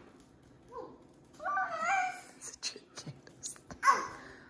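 A toddler's short babbling vocal sound about a second and a half in, followed by a few faint clicks and a short breathy burst near the end.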